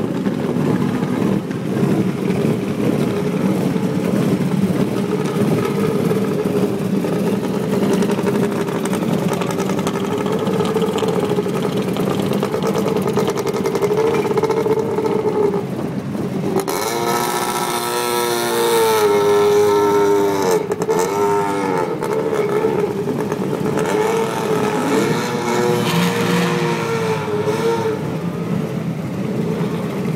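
Rally car engines running at idle in a paddock, a Mitsubishi Lancer Evolution and a Subaru Impreza among them. About halfway through there is a louder stretch of several seconds in which an engine revs up and down.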